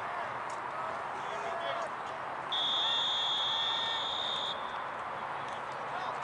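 A referee's whistle blown in one long, steady, high blast of about two seconds, a little before the middle, over the murmur and distant voices of players and spectators.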